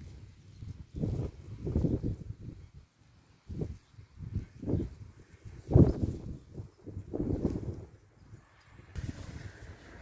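Wind buffeting the microphone outdoors in irregular low rumbling gusts, several a few seconds apart, with the strongest gust about six seconds in.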